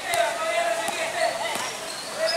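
A basketball being dribbled on a hard court: a few bounces, under a second apart. Children's voices shout over it.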